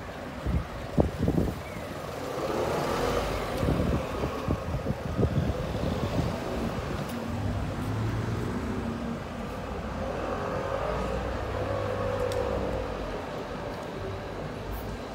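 City street ambience: road traffic passing along the street, a steady low rumble of car engines and tyres, with a few short thumps in the first couple of seconds.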